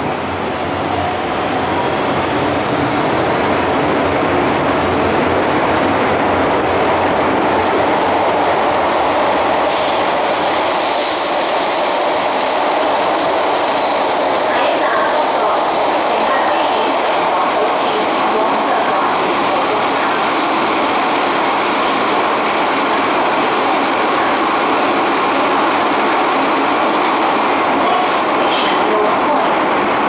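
MTR metro train heard from inside the car as it pulls away and runs through the tunnel: a loud, steady running noise that builds over the first few seconds as it gathers speed. A thin, high wheel squeal comes in about ten seconds in and lasts several seconds, and briefly again near the end.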